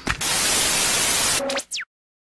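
Loud burst of hissing white-noise static, like an off-channel TV, opening with a click. Near the end it breaks into a brief low beep and a couple of quick falling chirps, then cuts off abruptly to silence.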